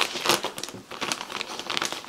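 Clear plastic packaging bag crinkling and crackling in a run of irregular crackles as hands pull the stiff, hard-to-open bag apart and work a garment out of it.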